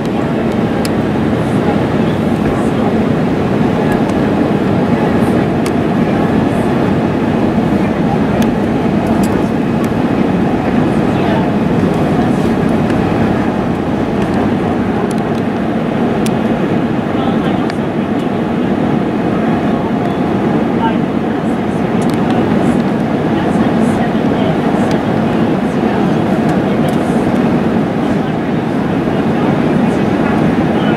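Steady cabin noise of an airliner in descent, heard from a window seat over the wing: a constant low rush of engines and airflow with no change in level.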